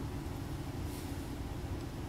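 Steady low background hum of a running machine, unchanging throughout, with a faint small tick about a second in.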